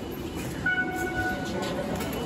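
Electronic tones from automatic station ticket gates as a passenger passes through, with a short click just before them. Several pitches sound together and are held for under a second, over the murmur of the station concourse.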